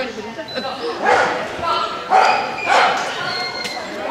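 Pembroke Welsh Corgi barking several times in quick succession.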